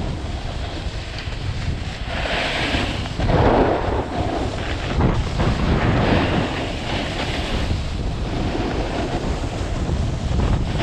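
Wind buffeting the microphone of a skier's camera while skiing downhill, a steady low rumble, with bursts of skis hissing and scraping over the snow, about two to four seconds in and again around six to seven seconds.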